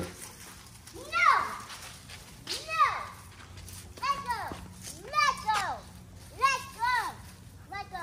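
A young girl's high-pitched voice: a series of short wordless calls or squeals, each rising and falling in pitch, coming about every second.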